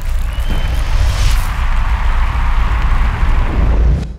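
Produced outro sound effect: a loud, deep rumble that swells in and holds steady, with a short high tone and a whoosh in the first second and a half. It cuts off at the end.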